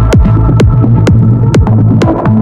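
Melodic techno music from a DJ mix: a steady four-on-the-floor kick drum, about two beats a second, over a sustained bass tone and higher synth notes.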